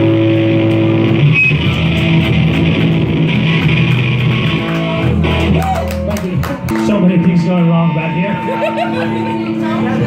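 Electric guitars played live through amplifiers by a rock band, holding loud ringing chords that change every few seconds.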